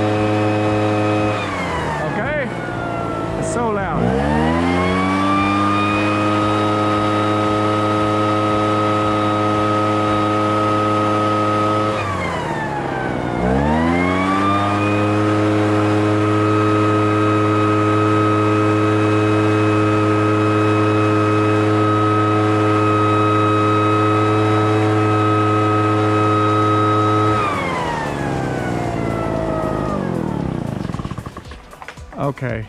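Gas backpack leaf blower engine running at full throttle with a steady drone. It is throttled down and revved back up twice, about two seconds in and again about twelve seconds in, then throttled down and winding off near the end.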